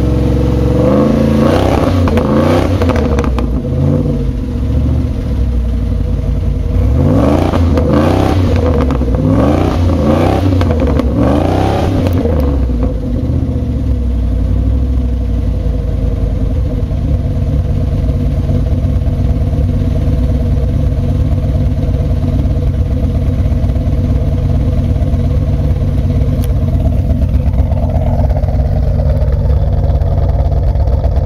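Exhaust of a 1989 Pontiac Firebird Trans Am GTA's built 383 stroker V8, revved in a string of quick blips through the first dozen seconds, then settling to a steady idle.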